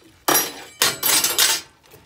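Metal spoon scraping and clanking against a metal cooking pot while stirring chunks of curry chicken. There is a short stroke about a third of a second in, then a longer run of strokes from about a second in.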